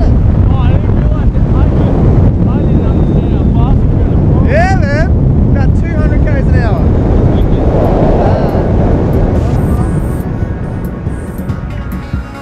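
Wind rushing over the camera's microphone during a tandem parachute descent: a heavy, steady rumble. A few brief voice calls are half-buried in it, and the rumble eases off near the end.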